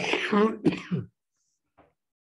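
An elderly man clearing his throat and coughing into his fist, a burst lasting about a second, followed by one brief faint sound near the end.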